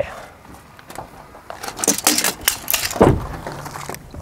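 Tesla Cybertruck door being shut with a heavy thud about three seconds in, preceded by scuffs and clicks of movement on gravel. A faint steady low hum follows as the air suspension raises the truck to its High ride height.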